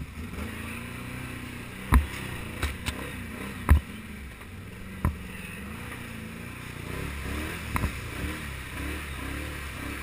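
Can-Am Outlander XMR 1000R ATV's V-twin engine running under way, heard from a helmet-mounted action camera, its pitch rising and falling with the throttle in the last few seconds. Half a dozen sharp knocks come through as the quad jolts over the rough, muddy trail.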